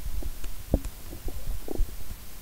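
Typing on a computer keyboard: irregular keystrokes, about five a second, heard mostly as dull low thuds.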